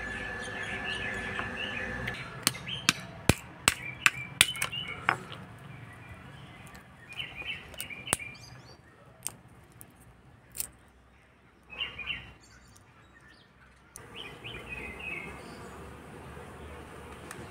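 Walnut shells cracking against a stone mortar: a quick run of about a dozen sharp cracks, then a few scattered cracks as the shells are broken apart by hand. Birds chirp in the background.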